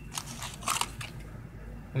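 Clear plastic blister packs of spinner fishing lures being picked up and handled, giving a few short crinkling clicks.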